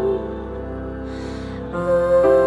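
Slow, gentle music of held, sustained chords. A loud held note ends just after the start, the music falls quieter with a faint hiss about a second in, then swells back near the end.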